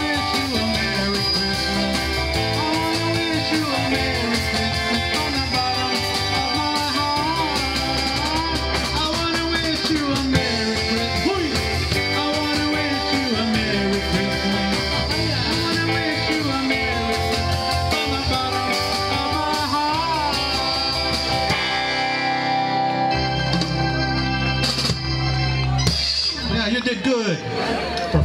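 Live band music from drum kit, keyboard and electric bass guitar, with a gliding lead melody over a steady beat. In the last few seconds the song thins to a held closing chord with a few final drum hits.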